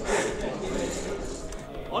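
Indistinct voices at a moderate level, then a man starting a countdown at the very end.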